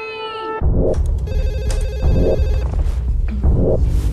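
Horror-style trailer soundtrack. A long held high note ends about half a second in, and heavy, dark, bass-heavy music starts with a pulsing beat. An old telephone rings over it briefly, from about one to two and a half seconds in.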